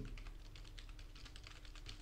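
Computer keyboard typing: a quick, faint run of key clicks.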